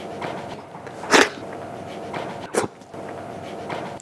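Kitchen knife cutting through tomato onto a wooden chopping board: two short, sharp strokes, about a second in and again near two and a half seconds, over faint steady background music.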